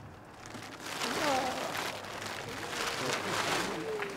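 Plastic tarpaulin rustling and crinkling as it is pulled down off a structure, building up about a second in, with faint voices in the background.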